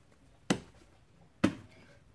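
Tarot cards tapped down on a wooden table: two sharp taps about a second apart.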